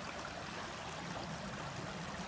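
Creek water flowing, a steady wash of noise without separate splashes.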